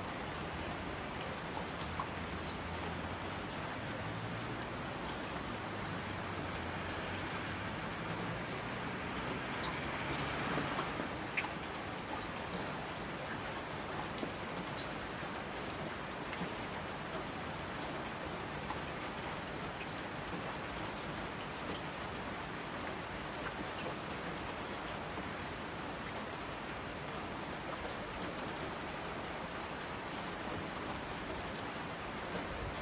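Steady rain falling, with many separate drops heard pattering. The rain swells briefly about ten seconds in.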